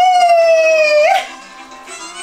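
A woman's long held sung cry into a microphone, one loud note sagging slightly in pitch for about a second and ending with a short upturn, over folk backing music that carries on after it.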